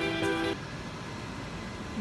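Background music with long held notes, cut off about half a second in, followed by a steady, even machinery noise from the tea-leaf conveyor line.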